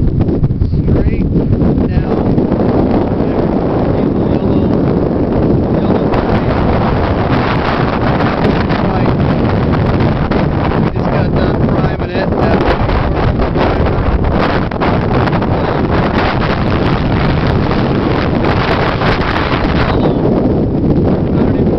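Strong wind buffeting the microphone, loud and steady, with no break.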